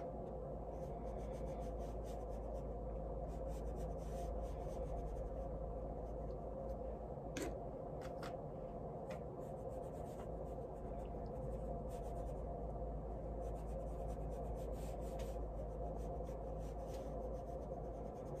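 Watercolor paintbrush stroking paint onto laser-cut birch plywood: soft, faint scratchy brushing over a steady low hum, with an occasional faint tick.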